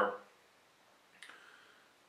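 The end of a man's spoken word, then near silence with a single faint click a little over a second in.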